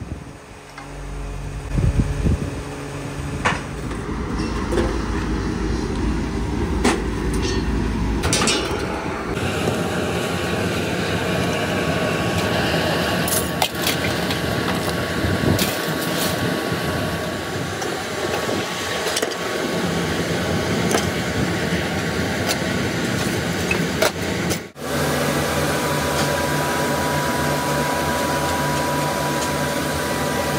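Workshop machinery running steadily, with scattered clicks and knocks. The sound changes abruptly about nine seconds in and again about twenty-five seconds in.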